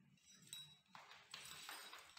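Faint metallic clinks and rattles of small hand tools, bolts and washers being handled and sorted, several light clinks starting about half a second in.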